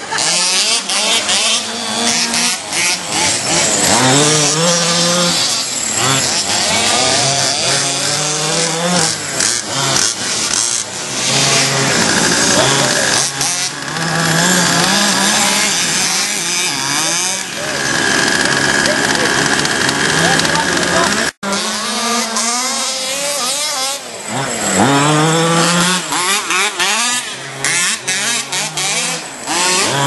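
Small two-stroke petrol engines of 1/5-scale off-road RC cars revving up and down as they race, several at once, their pitch rising and falling over and over. The sound cuts out for an instant about two-thirds of the way through.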